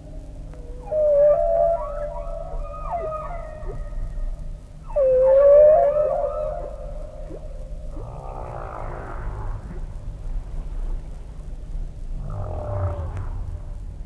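Whale song: long moaning calls that glide in pitch, the loudest about one and five seconds in, followed by rougher, grating calls around eight and twelve seconds in.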